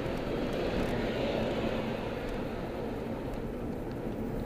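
Steady road and engine noise inside a moving car's cabin, a low rumble that gets a little quieter in the second half.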